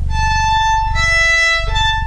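Violin playing flageolet notes (natural harmonics, the string only lightly touched): a clear, pure high tone, a lower tone from about a second in, then the high tone again near the end, one bow stroke each. The alternation sounds like an ambulance siren.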